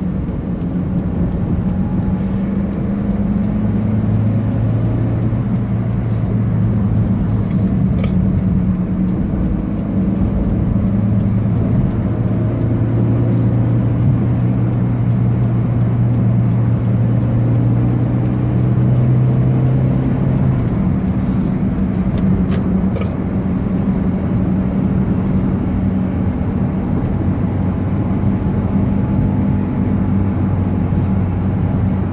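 A car's engine and tyre noise heard from inside the moving car: a steady low hum over road rumble. The engine note changes about two-thirds of the way through.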